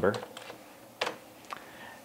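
A few separate keystrokes on a computer keyboard while a word is typed, the sharpest click about a second in.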